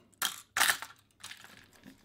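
A hard plastic crankbait with treble hooks being set down into a clear plastic tackle box compartment: two short plastic clatters close together, then faint handling noise.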